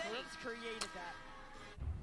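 Faint TV basketball broadcast audio: quiet commentator speech over a few steady background tones, with a low rumble coming in near the end as the broadcast's transition graphic starts.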